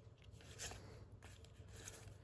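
Faint slides and flicks of trading cards being moved one at a time off a stack held in the hand, a soft flick about half a second in and another about a second in.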